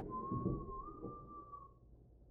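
A faint single held tone, whistle-like, that wavers slightly in pitch and fades out near the end.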